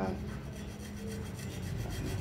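Hacksaw cutting through a bicycle fork's alloy steerer tube clamped in a bench vise, the blade rasping steadily back and forth.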